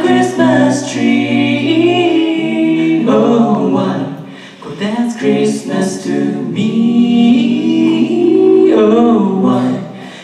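Five-voice a cappella group singing live in close harmony into microphones, several voice parts stacked at once with no instruments. The sound dips briefly about four and a half seconds in, then the full harmony swells back.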